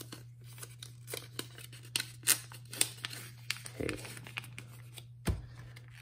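Blank placeholder cards slid into the plastic pockets of a photocard binder page: the plastic sleeves rustle and crinkle, with a run of short sharp clicks and taps, the loudest about two seconds in. A steady low hum runs underneath.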